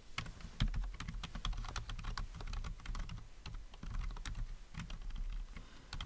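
Typing on a computer keyboard: a quick, irregular run of key clicks, several per second, with no pause.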